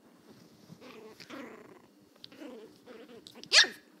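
Chihuahua puppy growling angrily in several short bouts, then giving one loud, high-pitched bark about three and a half seconds in.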